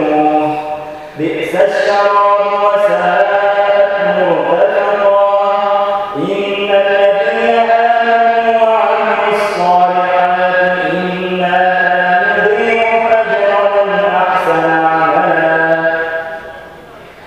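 A man reciting the Quran in a melodic, drawn-out style, holding long notes that bend slowly in pitch, with brief pauses for breath about a second in and about six seconds in.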